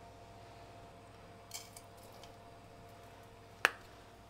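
Quiet kitchen sound: a faint steady hum from the induction hob under the pan, a brief soft hiss about one and a half seconds in, and one sharp click near the end.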